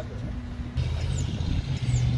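A motor vehicle engine running: a steady low hum that gets louder about a second in.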